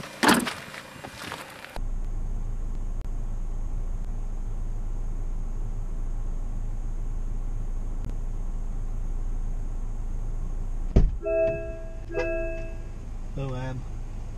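Steady low electrical hum with a faint hiss, heard through the dash cam's own recording. About eleven seconds in there is a sharp click, then two identical short electronic chimes, and a brief voice near the end.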